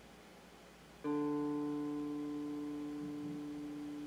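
A single electric guitar string plucked about a second in, its note ringing on and slowly fading as it is checked against a clip-on tuner. The string is in tune.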